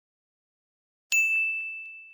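About a second of dead silence, then a single bright ding from an electronic chime sound effect. It starts suddenly and fades away over the next second. It is the cue heard before each vocabulary word.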